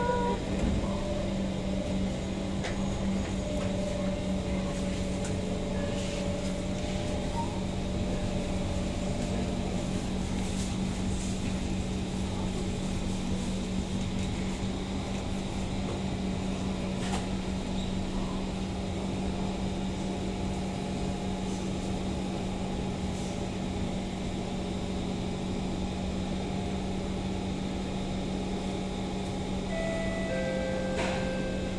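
Steady hum with a constant low tone from a Kawasaki C151 metro train standing at a platform with its doors open, its on-board equipment running while it waits.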